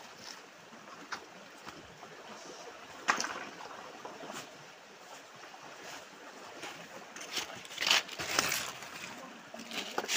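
Shallow rocky stream running, with splashes as people wade and reach into the water: one sharp splash about three seconds in and a louder cluster of splashes near the end.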